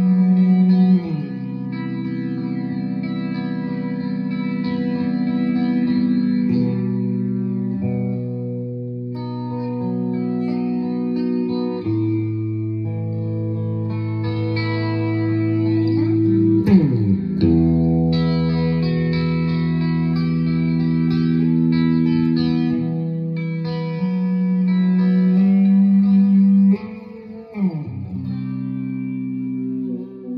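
Electric guitar with a Sustainiac sustainer pickup holding long notes and chords without fading, each changing every few seconds. Three times the pitch swoops quickly downward.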